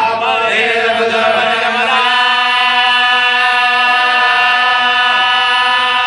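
Men's voices chanting a marsiya, the Urdu elegy of Shia mourning: a lead reciter and supporting voices sing together. They move through a few pitches, then hold one long drawn-out note from about two seconds in to the end.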